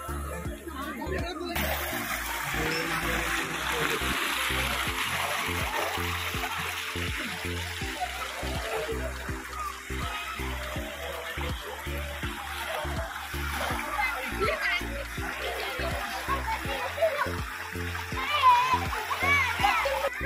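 Background music with a steady beat over the splashing and rush of a shallow spring-fed stream with people swimming in it. The water noise comes in suddenly about a second and a half in, and voices, some of them children's, are heard over it.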